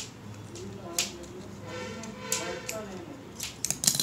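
Small scissors snipping through coloured craft paper as a leaf shape is cut out. There is a sharp snip about a second in and a quick run of snips near the end, with a faint voice in between.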